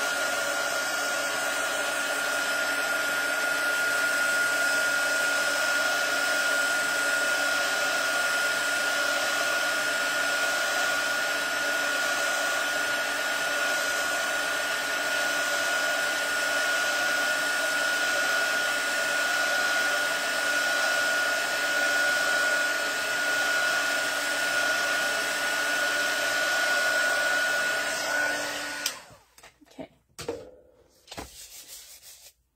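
Handheld craft heat tool blowing hot air steadily, its fan giving a steady high whine over the rush of air, drying a gel-medium image transfer. It switches off about a second before the end.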